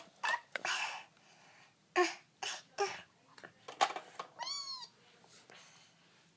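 A child's voice making short squeaky, cat-like noises in play, with one high squeal that rises and falls near the end, among breathy sounds and small knocks of plastic toys being handled.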